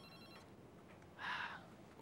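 Faint electronic telephone ringer trilling with steady high tones that stop about half a second in, followed by a short, soft muffled sound about a second later.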